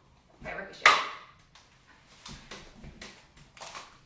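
A short, sharp burst about a second in, the loudest sound, then faint rubbing and tapping as a paper cup and a balloon are handled.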